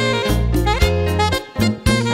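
Live tropical dance band playing an instrumental passage: a saxophone melody over electric bass, drum kit and keyboard, with the bass and drums keeping a short, repeating dance rhythm.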